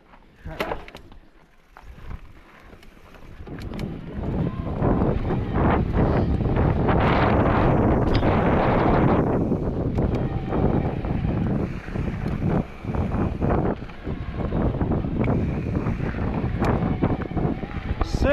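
Wind rushing over the microphone of a bike-mounted camera, with tyre and trail noise from a mountain e-bike riding down a dirt trail. It is quiet with a few clicks at first, then builds from about four seconds in and stays loud as the bike gathers speed.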